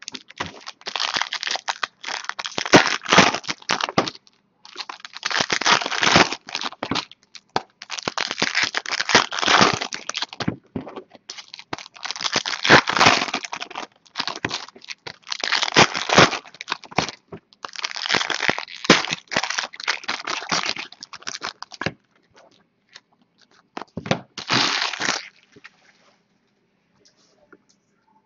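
Foil trading-card pack wrappers being torn open and crinkled, one pack after another: about seven bursts of crackling, each a second or more long, with short pauses between them.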